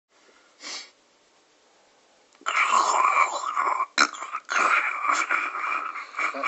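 A person's breathy, whispery voice sounds with no clear words: one short burst near the start, then a longer run from about halfway through.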